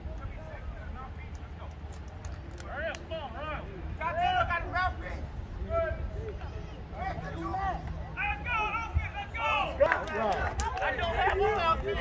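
Several voices of football players and onlookers talking and calling out over one another, with no single clear speaker, growing busier and louder near the end. A steady low rumble runs underneath.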